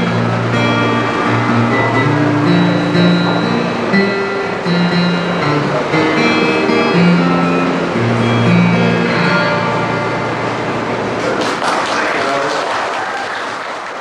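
Acoustic guitar playing the closing instrumental bars of a folk ballad, a steady picked and strummed pattern of low bass notes. From about eleven seconds in, the guitar gives way to audience applause.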